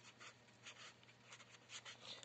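Marker pen writing on paper: a run of faint, short scratching strokes as a short phrase is written out.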